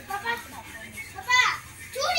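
A young child's voice: a few short sounds near the start, then a loud, high-pitched cry a little past halfway that falls steeply in pitch.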